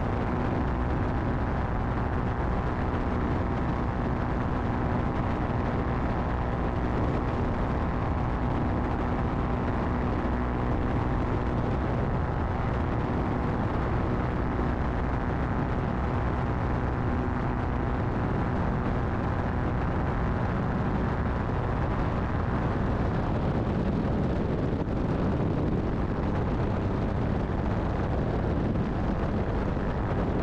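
Aerolite 103 ultralight's engine running at steady cruise power in flight, heard from the open cockpit over a constant rush of air. Its note becomes less even in the last several seconds.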